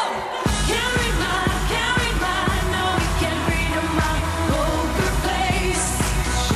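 Live dance-pop performance: a woman sings into a handheld microphone over an electronic backing track with a steady kick drum about twice a second. The bass drops out for a moment right at the start, then the beat comes back in.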